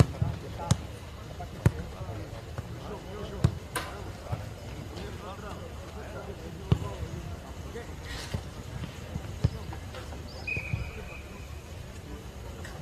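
Footballs being kicked on a grass training pitch: sharp thuds of boot on ball at irregular intervals, with distant players' voices calling in between.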